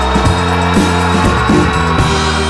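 Instrumental passage of a pop-rock song with no singing: a band with drums and cymbals, its low notes and chords changing about every half second.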